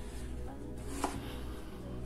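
Kitchen knife cutting through raw peeled pumpkin and knocking on a wooden cutting board, a couple of cutting strokes with the clearest about a second in.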